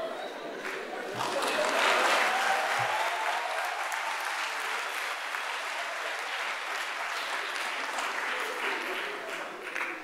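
Audience applauding in a large hall, swelling about a second in and continuing steadily before fading near the end.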